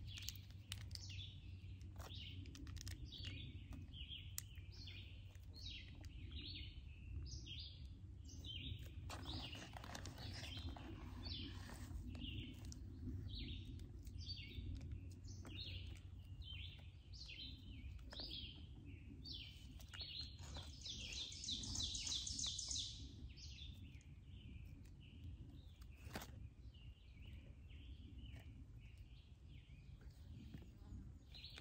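Songbirds chirping, many short repeated calls, with a louder, higher trill about two-thirds of the way through. A few soft clicks and crinkles of a paper sandwich wrapper being handled.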